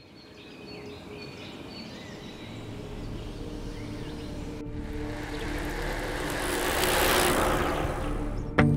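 Outdoor road ambience fading in from near silence, with a few faint bird chirps. In the second half a vehicle approaches and passes close by, its noise swelling to a peak near the end and then easing.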